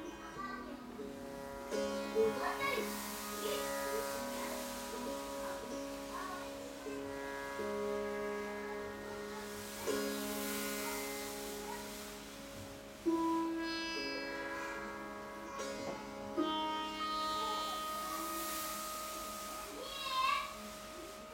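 Slow acoustic music led by a long-necked string instrument: held notes that step to a new pitch every second or two over a sustained drone, with a few sharper plucked attacks in the second half.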